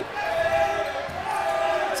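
Basketball being dribbled on a hardwood gym court during live play, with a thin wavering high tone held through most of it, heard in a large echoing gym.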